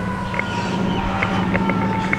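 A siren's slow wail: one held tone sliding slowly down in pitch, over a steady low hum.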